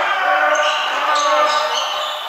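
Basketball game sounds in a gym: sneakers squeaking in short, high chirps on the hardwood court, over the voices of players and spectators.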